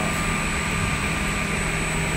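S8-S468JP automatic edge banding machine running, a steady hum with an even hiss as a panel passes along its table.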